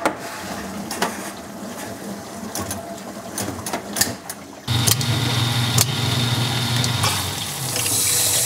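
Hotpoint dishwasher filling with water, with a few sharp clicks in the first half. About halfway through the sound jumps to a louder steady low hum with rushing water at the newly replaced water inlet (solenoid) valve, which is open and feeding the tub.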